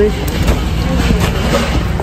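Metal shopping cart rolling over a concrete store floor: a steady low rumble.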